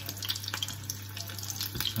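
A tempura-battered prawn frying in shallow hot oil in a frying pan: a dense, steady crackling sizzle.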